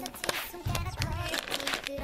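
Plastic packaging of a Kracie Popin' Cookin candy kit crinkling as it is handled and turned, over background music.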